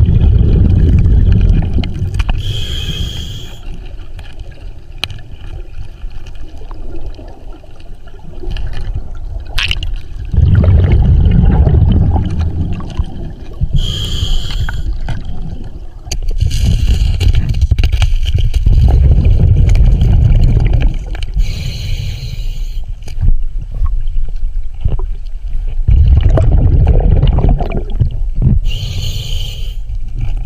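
Scuba diver breathing through a regulator underwater: a short high hiss of inhaled air, then a longer low rush of exhaled bubbles, repeating over about four breaths.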